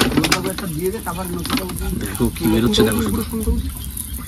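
Voices talking over the steady hiss of water sprayed from a hose onto a rusty boat engine, washing it down.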